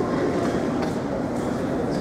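Steady low rumble of gymnasium room noise, with a couple of faint knocks.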